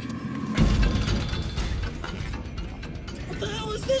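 A sudden loud bang about half a second in, then a run of knocks and clatter over tense music, as the staged creature comes back at the vehicle.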